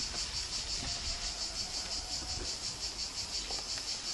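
A steady chorus of insects: a high buzzing that pulses evenly several times a second.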